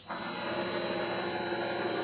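Vevor mini lathe running: a steady motor hum with a thin high whine, building up over the first half second and then holding even.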